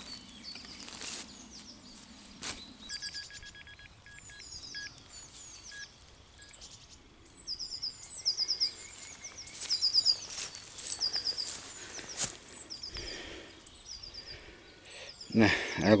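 Songbirds singing repeated phrases of quick, falling high chirps, with a few single sharp knocks of a hand digger cutting into turf and soil.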